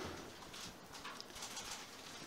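Faint room noise in a press-conference hall, with a few soft, scattered small sounds and no speech.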